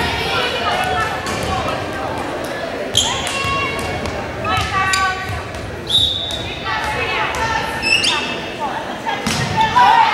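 Volleyball game in an echoing gym: players and spectators calling out, sneakers squeaking on the court floor, and the ball thumping, with a short referee's whistle about six seconds in signalling the serve.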